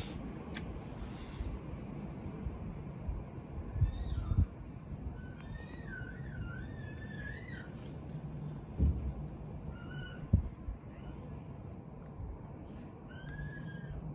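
Drawn-out, wavering animal calls that rise and fall in pitch, the longest lasting about three seconds near the middle, over a low rumble with a few thumps.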